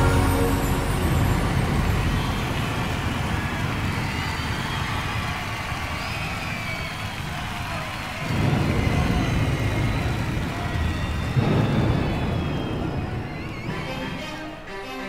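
Live concert audience cheering and whistling between songs on a live album played from vinyl. The crowd noise swells about eight seconds in and again a few seconds later.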